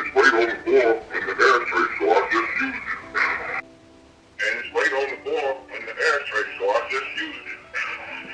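A person's voice talking, untranscribed and possibly processed or played over a phone. A brief pause about three and a half seconds in holds only a few steady tones.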